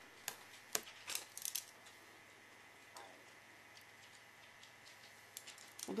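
Light clicks and taps of a clear plastic ruler and a craft knife being picked up and set against the paper on a cutting mat, four in the first second and a half, then near-silent room tone with a few faint ticks near the end.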